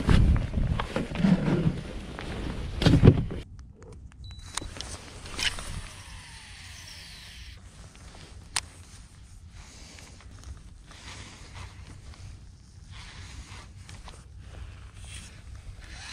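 Rustling and knocking on a boat deck as a just-caught fish is handled and unhooked, ending in a loud thump about three seconds in. After that it is quiet but for faint outdoor background and a single sharp click about halfway through.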